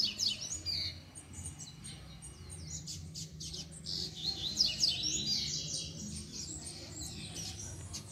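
Double-collared seedeater (coleiro) singing: a quick burst of high chirping notes in the first second, then a longer run of song about four to six seconds in, over a low steady background hum.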